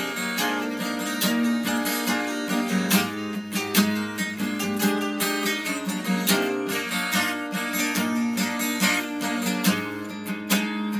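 Instrumental passage of an emo song: guitar strummed in quick, even chords, with no singing.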